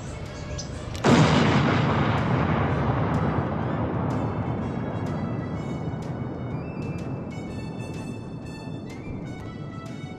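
A comic explosion sound effect: a sudden loud blast about a second in that dies away slowly over several seconds. Music comes in over the fading rumble from about four seconds in.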